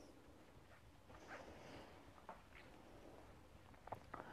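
Near silence, with a few faint, short rustles and a small tick of yarn and crochet hook being worked.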